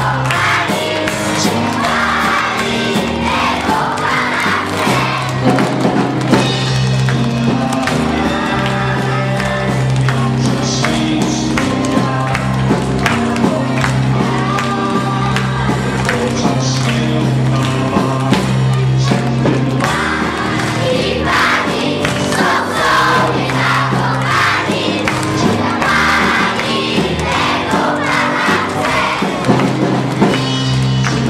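Live band with drum kit, keyboard and guitar playing a pop song, with a large crowd of children singing along.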